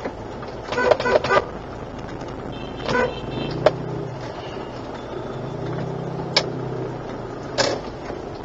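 Vehicle horns giving short toots in stop-and-go street traffic: a quick run of three about a second in, another near three seconds, and one more near the end. A low engine hum from idling traffic sits underneath.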